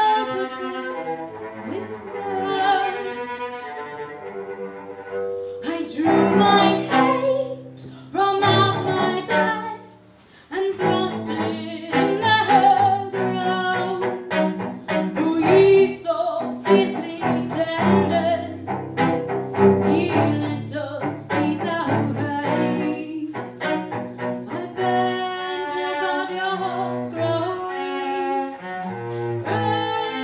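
Bowed cello playing a song, with a woman singing over it at times; the music breaks off briefly about ten seconds in, then resumes.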